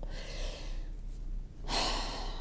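A woman breathing: a soft breath in, then a louder sigh beginning near the end.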